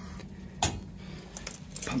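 A sharp click about half a second in, then a few lighter metallic jingling clicks, over a steady low hum.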